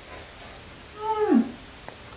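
A single short vocal sound about a second in, sliding down in pitch over about half a second, followed shortly after by a brief sharp click.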